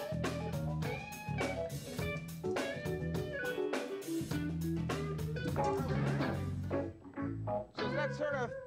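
A jazz-rock band playing a syncopated groove: electric guitar chords and bass notes over a drum kit. The playing thins out about seven seconds in.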